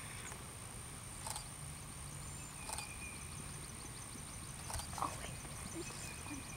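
Horse trotting on a grass arena: faint hoofbeats on turf with a few sharp knocks about a second or more apart, over a steady high whine.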